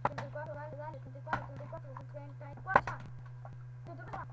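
A plastic soft-drink bottle being flipped and landing on a tabletop: three sharp knocks, the last and loudest near the end, with a faint voice in between.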